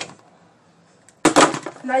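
A second of quiet room tone, then a short, loud clatter of something handled close to the microphone, a quick run of clicks and rustle, just before a voice begins.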